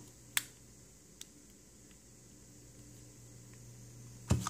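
A sharp click about half a second in, then a fainter click a little after a second: the release button on the back of a portable mesh nebulizer being pressed to free its medicine cup.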